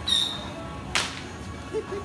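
A single sharp firecracker crack about a second in, with a short high-pitched whistle at the very start.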